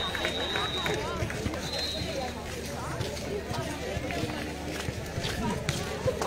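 Indistinct voices of people talking at a distance, with a thin high steady tone sounding for about a second at the start and again briefly around two seconds in, and a few sharp clicks near the end.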